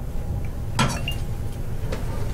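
A glass oil bottle clinks once, sharply and with a short ring, a little under a second in, followed by a fainter tap near the end, over a steady low hum.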